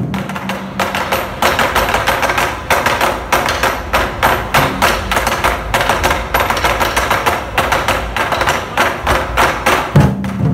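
A drum troupe playing a fast, even rhythm of sharp stick strikes, several a second, on large barrel drums. The strikes are crisp clicking taps with little deep drumhead boom.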